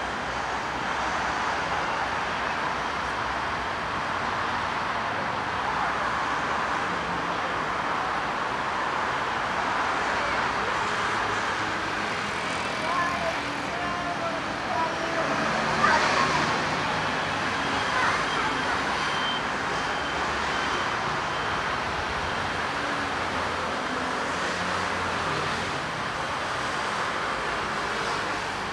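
Steady city street traffic: cars and scooters passing on the road beside the sidewalk, as a continuous wash of noise. A single sharp knock stands out about halfway through.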